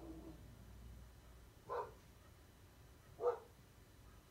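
A dog barking in the background: two short single barks about a second and a half apart.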